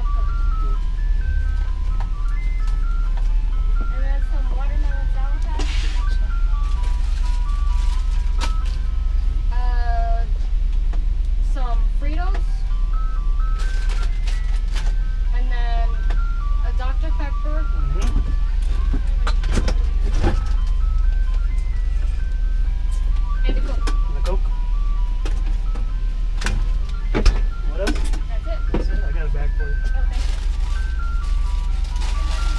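Ice cream truck's electronic chime playing a repeating jingle of single high notes throughout, over a steady low hum. Voices come and go through the jingle.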